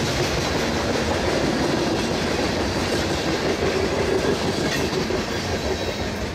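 Tail end of a CSX manifest freight train passing close by: the steady rolling noise of freight cars' steel wheels on the rail.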